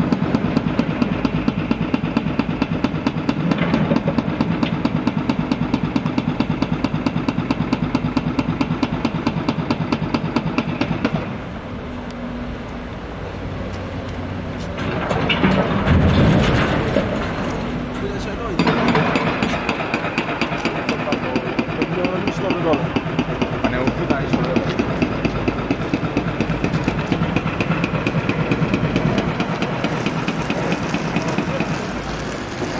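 Caterpillar excavator's diesel engine running with a fast, even pulsing beat. The pulsing drops away for several seconds past the middle, when a louder burst of noise comes in, then resumes.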